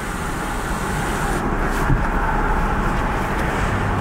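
Steady road traffic noise heard from inside a car, an even rush with no distinct events.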